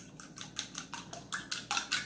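A fork clinking rapidly against a small glass bowl as it works the beaten eggs, about six or seven light clicks a second, growing louder toward the end.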